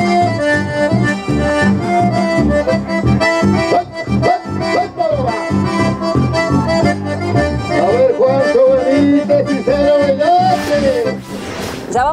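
Chamamé played on accordion: a lilting melody over a steady, pulsing bass beat, dropping away just before the end.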